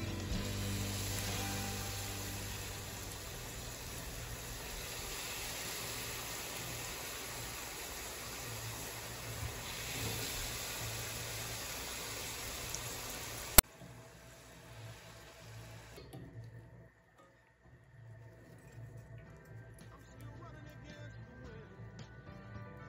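Strips of pasta dough frying in hot oil in an enamel pan, a steady sizzle. A sharp click comes about two-thirds of the way through, after which the sizzle is quieter. Background music plays underneath.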